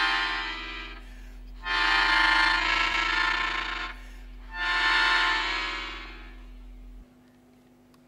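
Melodica playing long chords: one fades at the start, then two more swell and die away, about three seconds apart. A low hum cuts off suddenly near the end, leaving near silence.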